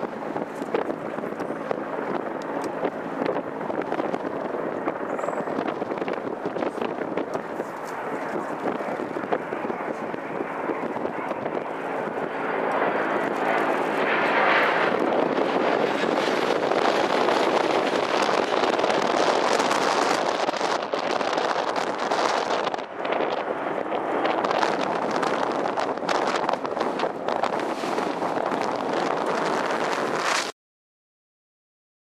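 Mitsubishi Regional Jet's Pratt & Whitney PW1200G geared turbofan engines on final approach and landing: a steady jet noise with low engine tones. It grows louder about halfway through as the jet touches down and rolls past along the runway, then stays loud and rushing.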